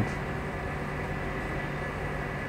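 Steady room hum and hiss in a pause between speech, with a faint steady high whine.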